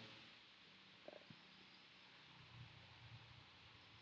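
Near silence: faint room tone with a low hum, and a couple of faint small ticks about a second in.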